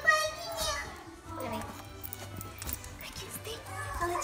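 Indistinct voices, a child's among them, over background music, with a high voice loudest in the first second.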